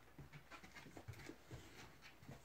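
Bull terrier panting faintly in short, uneven breaths.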